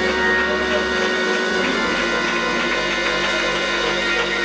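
Live church worship music: held chords on a keyboard instrument with singing voices over them and hands clapping along.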